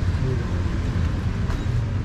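Steady low rumble of street traffic, with a faint click about one and a half seconds in.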